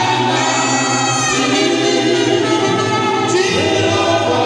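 Gospel music: a choir singing, with held notes over a steady low accompaniment.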